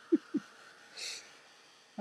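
A woman's laughter trailing off in two short pulses, then one brief breath through the nose about a second in.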